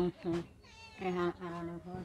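A person's voice speaking in short phrases with long held vowels.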